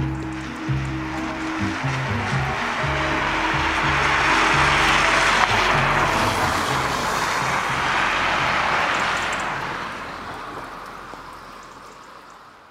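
Low string and bass notes of a song's outro, fading out, under the rushing tyre noise of a car passing on a wet street, which swells to a peak about halfway through and then dies away.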